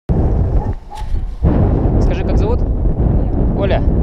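Wind buffeting an action camera's microphone high up in the open: a heavy, continuous rumble with a brief lull about a second in.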